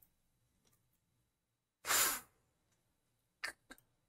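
A single short, sharp breath, a sigh-like exhale lasting about half a second, about two seconds in. A few faint clicks follow near the end.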